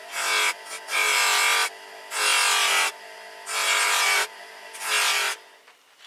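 Bench grinder fitted with a cloth polishing wheel and polishing paste, running, with a chrome bicycle part pressed against the spinning wheel again and again. Five loud rubbing bursts, each under a second, stand out over the steady motor hum, and the sound fades out near the end.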